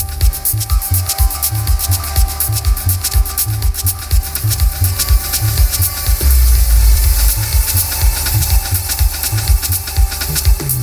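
Live electronic techno/IDM music: a pulsing bass beat under a dense, scratchy texture of fast clicks and sustained tones, with a heavier, held bass swell about six seconds in.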